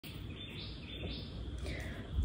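Quiet ambient noise with birds chirping outside.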